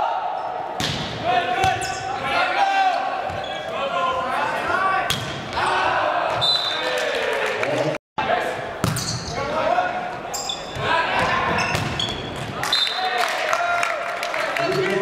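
Volleyball rally in an echoing school gym: sharp slaps of the ball being struck and hitting the hardwood floor, mixed with players shouting calls. The sound cuts out abruptly for a moment about halfway through.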